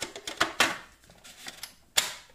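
Hard plastic clicks and knocks as a Bosch food processor's clear bowl lid and food pusher are handled and fitted, several in the first second and a sharp click near the end.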